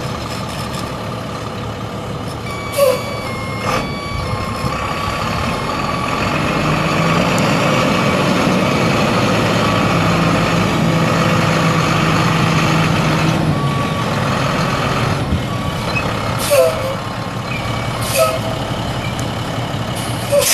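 International DT466 inline-six turbo diesel engine of a bucket truck running as the truck drives slowly around, with a steady low hum that swells through the middle. A few brief sharp sounds break in, twice early on and twice near the end.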